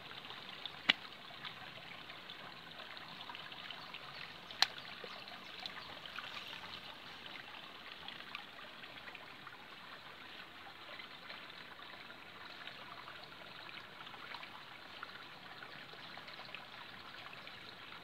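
Shallow river water flowing and trickling steadily over stones, with two sharp clicks about one and five seconds in.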